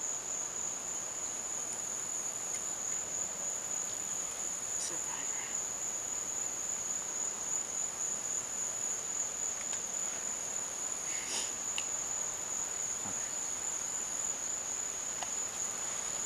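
Insects trilling steadily at one unchanging high pitch over a faint outdoor hiss.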